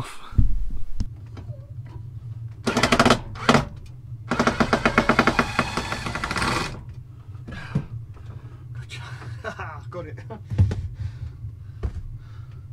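A power driver removing screws from under a worktop, running in two bursts of fast rattling: a short one about 3 s in and a longer one from about 4 to 7 s in. There is a thump near the start and a steady low hum throughout.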